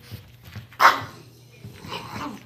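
Small dogs at play: one loud, sharp bark a little under a second in, then a softer bark near the end, with light scuffling before.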